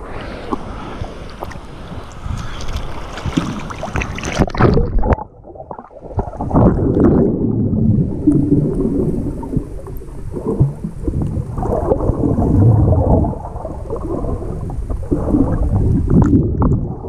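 Sea water sloshing and splashing around a GoPro HERO5 held at the surface. About five seconds in, the sound turns to a muffled underwater rumble and gurgle as the camera goes under, with irregular swells.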